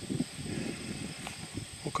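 Outdoor field ambience: wind buffeting the microphone in uneven low rumbles, with a faint, steady, high-pitched insect drone.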